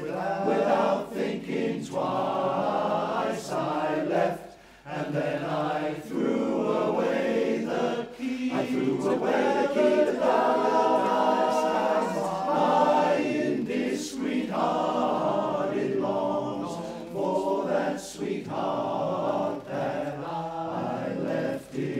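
Male barbershop chorus singing close four-part harmony a cappella, with a brief breath pause about four and a half seconds in.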